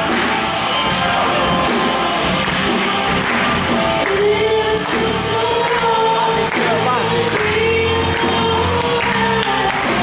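Live band playing a song: a female voice sings over electric guitar, bass guitar and drum kit, amplified through the hall's speakers.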